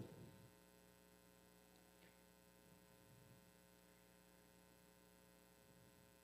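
Near silence: a faint, steady electrical hum with no other sound.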